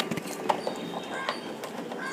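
Scattered light clicks and knocks from the plastic housing of a large LED ring light being handled and turned, with faint short bird chirps in the background.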